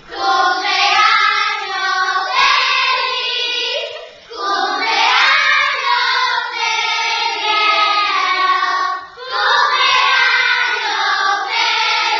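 A group of children singing together in unison, in three phrases with short breaks about four and nine seconds in.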